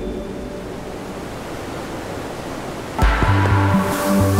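Ambient background music over a steady rush of falling water. About three seconds in, the music gets suddenly louder as a deep, pulsing bass line comes in.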